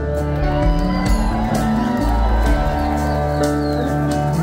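Live band with electric and acoustic guitars and keyboards playing an instrumental passage.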